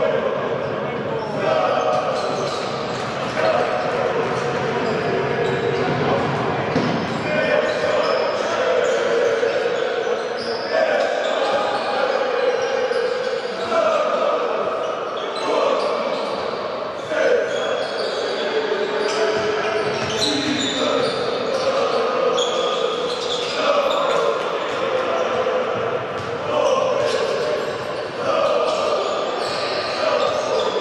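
Indoor basketball game sound: the ball dribbling on the wooden court and sneakers squeaking, over a crowd of fans chanting in repeated phrases about every two seconds, in a large echoing hall.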